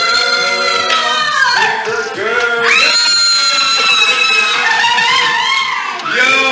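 Several voices in long, high, held cries that overlap like a choir, with a rising cry about three seconds in.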